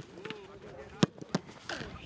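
A football kicked hard in a shot at goal, two sharp impacts about a third of a second apart, over distant voices on the training pitch.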